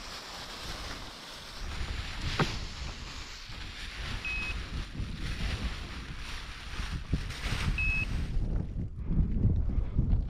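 Wind buffeting the microphone, with the rustle of paraglider wing fabric being pulled and spread out over the ground. A sharp click comes about two seconds in, and two short high beeps come about four and eight seconds in.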